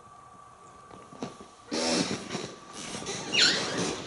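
Loud rustling and crackling starts just before two seconds in, near an African grey parrot. Near the end the parrot gives a sharp, falling squawk.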